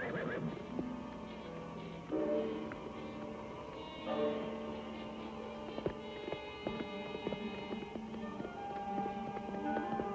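Sustained film-score chords that shift every few seconds. A horse whinnies right at the start, and in the second half a horse's hooves beat in a quick run as it is ridden off.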